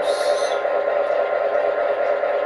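Loksound 5 XL sound decoder in a gauge 1 USA Trains GP9 model locomotive playing a diesel engine idle sound through the loco's speaker, a steady drone. There is a short hiss in the first half-second.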